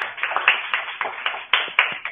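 A small group applauding, a quick, dense run of hand claps, heard through a video call's narrow, muffled audio.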